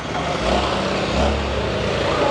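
A motor vehicle passing close by: a low rumble with engine tones that swells about half a second in and eases off near the end.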